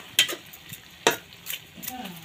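Metal spatula stirring wet mustard greens in a kadhai, knocking sharply against the pan twice about a second apart, over a faint hiss of the steaming greens.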